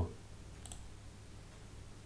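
Quiet room tone with one faint short click about two-thirds of a second in, a computer mouse click.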